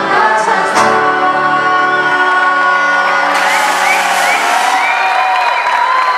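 Live folk band with accordions, acoustic guitar and saxophone ending a song on a long held chord, the low notes dropping out a little after two seconds in. From about three seconds in the audience cheers, with several short whoops over the still-sounding accordion note.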